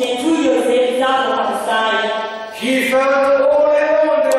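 A slow sung chant by a single voice, long held notes stepping from one pitch to the next, with a short breath about two and a half seconds in.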